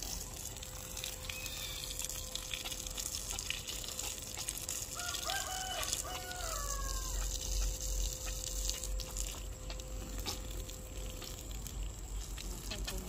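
A rooster crows once, about five seconds in: a single call of about two seconds that rises, holds, then drops. Under it, water from a garden hose runs and splashes onto bare soil.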